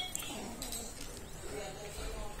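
A boy's wordless moaning cries, a few drawn-out voiced sounds, during a convulsive fit.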